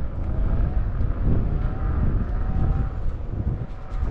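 Wind buffeting the microphone and road rumble while riding a Begode A2 electric unicycle, with a faint whine from its hub motor that rises and falls slightly.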